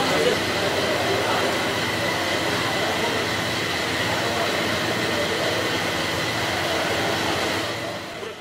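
Steady rushing noise of air coolers and ceiling fans running in a large hall, with a faint high whine held throughout and indistinct voices murmuring beneath.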